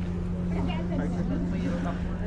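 Faint, indistinct background voices over a steady low hum.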